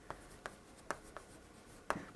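Chalk writing on a chalkboard: about five irregular sharp taps and short strokes as characters are written, the loudest near the end.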